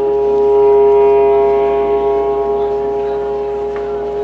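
A clarinet and a long wooden wind instrument hold one steady note together. It swells over the first second and slowly eases off.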